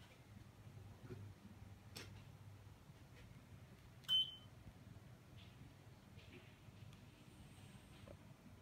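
A single short electronic beep about four seconds in, from the Saijo Denki split air conditioner's indoor unit acknowledging a remote-control command. A faint click comes about two seconds in, over a faint low hum.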